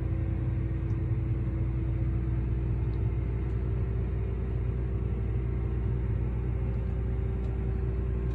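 John Deere T660 Hillmaster combine's engine running steadily at about 1200 rpm, heard from inside the cab as a low drone with a steady hum over it, while the Hillmaster levelling hydraulics tilt the machine.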